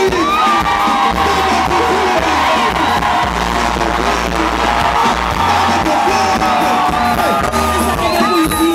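Live pop music played loudly through a concert sound system: a band with steady bass and a woman singing long held notes into a microphone, with shouts from the crowd.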